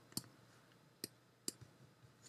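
Three faint, sharp clicks of a computer mouse button: one just after the start, one about a second in, one at about a second and a half.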